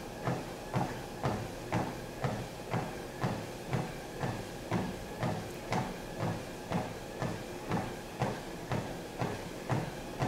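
Footfalls of a person walking on a Sole F89 treadmill at 3 mph: even, regular steps on the running deck, about two a second, over a faint steady hum from the running belt and motor.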